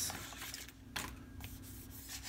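A clothes iron sliding and scraping over a sheet of paper laid on a canvas, the paper rustling, with a short click about a second in.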